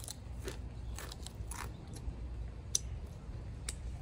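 A person chewing a crunchy tortilla chip: scattered, irregular small crunches and mouth clicks.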